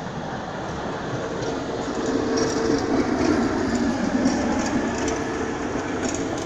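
A passing vehicle's rumble with a steady hum, swelling to its loudest about three seconds in and easing off again.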